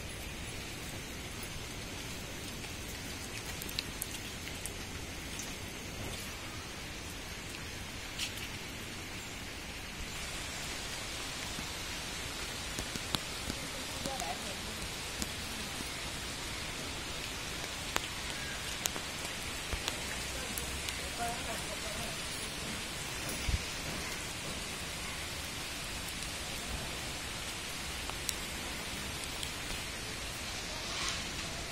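Steady rain hiss with scattered drops ticking, a little louder from about ten seconds in.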